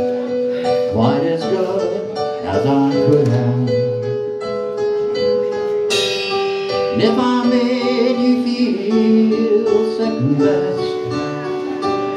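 Live country band playing a slow song: acoustic and electric guitars, drums and Hammond organ with held chords, and singing over it. A new chord with a cymbal comes in about six seconds in.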